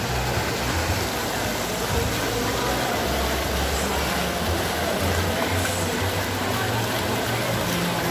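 Steady splashing of fountain water, with the murmur of a crowd of visitors behind it.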